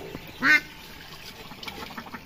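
A white domestic duck quacks once, short and loud, about half a second in. Faint high peeps from the ducklings sound around it.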